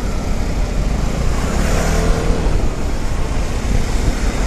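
Riding noise on a Vespa scooter under way in traffic: the steady low drone of its small single-cylinder engine and tyres mixed with wind rushing over the microphone.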